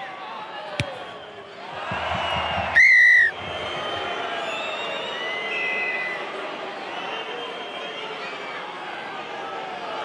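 Rugby referee's whistle blown once, sharp and loud for about half a second, about three seconds in, stopping play. Stadium crowd noise swells just before it and carries on after.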